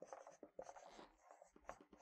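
Red dry-erase marker writing on a whiteboard: a quick run of short, faint strokes as the words are written out.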